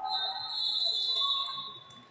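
A referee's whistle blown in one long, steady, high blast of about two seconds, over voices in the hall.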